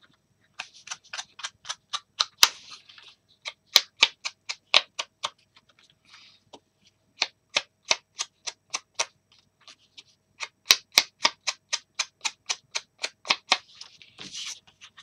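A foam ink-blending pad, used without its handle, is rubbed quickly along the edges of paper pieces to ink them. It makes short, scratchy strokes at about five a second, in runs with brief pauses between them.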